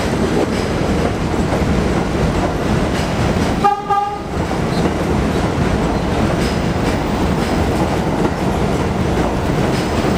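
R62A subway train running into the station past the platform, its wheels on the rails making a steady rumble. About four seconds in, one short horn blast sounds.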